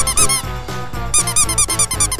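Rubber duck toys squeaked in two rapid runs of short, high squeaks, one at the start and another from about a second in, over background music.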